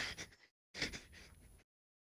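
Faint breathy gasps of a person catching their breath after hard laughter: one fading at the start and a short one about a second in, separated by stretches of dead silence where the audio cuts out.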